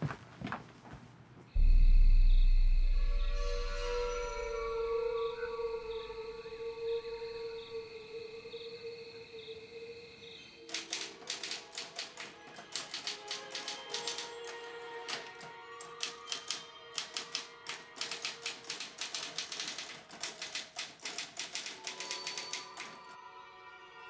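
A sudden deep boom about two seconds in that slowly dies away into held musical score tones. From about halfway through, typewriter keys clatter in fast, irregular runs over the music until shortly before the end.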